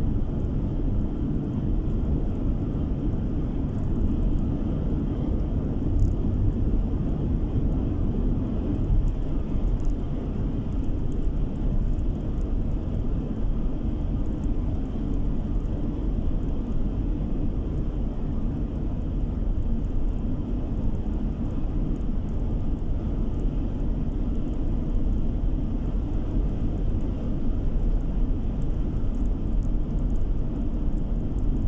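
Steady low rumble of tyre and engine noise heard inside a car's cabin while it cruises along an open road, with a couple of faint ticks a few seconds in.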